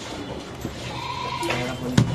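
A goat bleating in a market, one held call in the middle, over steady background hum; near the end a sharp chop of a cleaver on the wooden block.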